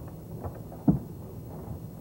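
A phone being dialled: two short clicks, the second a louder thump just under a second in, over a low steady background.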